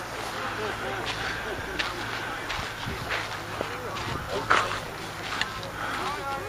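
Indistinct voices of people talking in the background over a steady low hum of outdoor noise, with a few sharp clicks or knocks, the loudest about four and a half seconds in.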